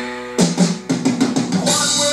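Rock music played back through PMC Fb1i Signature floor-standing speakers driven by a Unison Research Unico 100 amplifier: a held chord thins out, then less than half a second in the drum kit comes in with a loud hit and carries on with bass drum and guitar.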